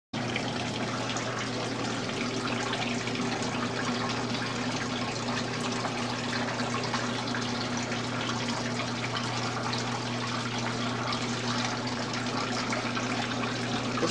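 Water splashing and trickling steadily down a small plaster model waterfall, with a steady low hum underneath.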